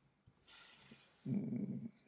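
A man draws a quiet breath, then gives a short, low, steady hum of about half a second before speaking.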